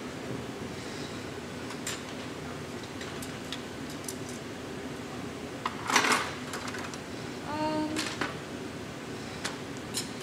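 Steady roar of a glassblowing glory hole (reheating furnace) as the piece is turned inside it, with a few sharp clicks. A louder short clatter comes about six seconds in, and a brief pitched tone follows near eight seconds.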